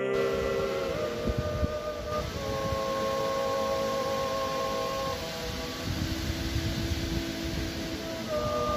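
A male vocal ensemble singing a slow Georgian polyphonic chant in several parts, unaccompanied. The chords are held and move together to a new pitch every second or two. Wind buffets the microphone underneath.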